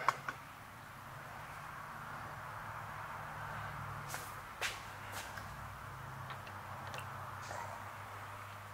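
Steady low hum of a machine shop with a few light clicks and knocks from handling the camera and the milling-machine setup.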